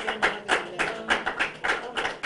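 Audience clapping together in a steady rhythm, about four claps a second.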